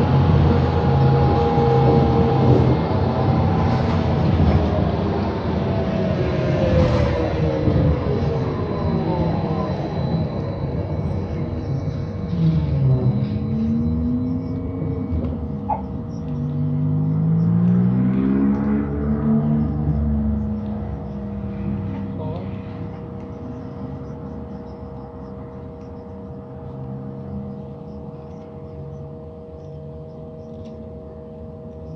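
Inside a city bus: the drivetrain's whine, several pitches together, falls steadily as the bus slows to a stop. While it stands in traffic it settles to a steady hum, growing quieter toward the end.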